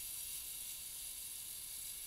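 Faint steady hiss of background room noise, with no clicks or mechanical sounds.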